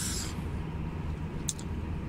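Steady low drone of engine and road noise inside a Renault Magnum truck cab cruising on the motorway, with a short tick about one and a half seconds in.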